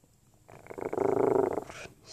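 A low growling, purr-like sound lasting a little over a second, starting about half a second in.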